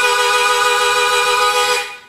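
Suzuki Harpmaster diatonic harmonica holding a chord of several steady notes, then stopping sharply near the end.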